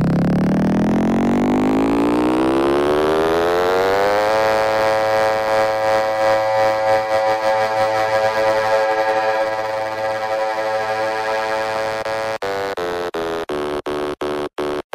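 Electro house synth riser: a buzzy, many-layered tone sweeps steadily up in pitch for about four seconds, then holds as a sustained chord. Near the end it is chopped into a stutter that speeds up.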